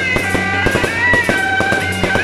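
Fireworks bursting with many sharp cracks and crackles, over loud music carrying a high held melody above a steady low drone.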